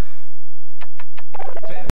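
Stage music fades out, then a quick run of short clucking calls and clicks plays over the cut to a station graphic. It ends in a loud click, after which the sound stops dead as the recording cuts off.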